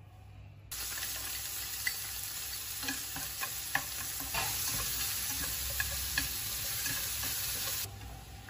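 Sausages, shrimp, bacon and garlic sizzling in oil in a frying pan, stirred with chopsticks that give scattered light clicks against the pan. The sizzle starts suddenly about a second in and cuts off just before the end.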